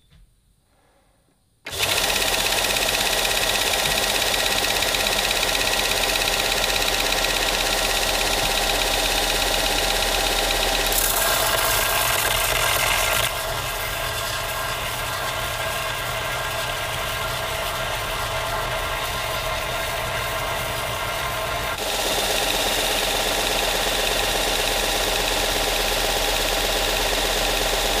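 Bench belt-and-disc sander switched on about two seconds in and running steadily, a rusty cast-iron barbell weight plate pressed against the moving sanding belt to grind off the rust. The noise grows harsher for a moment near the middle, drops a little, and comes back up later.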